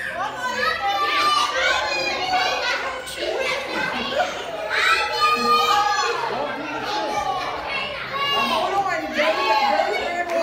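A crowd of children shouting and laughing over one another, many high voices at once with no single speaker standing out.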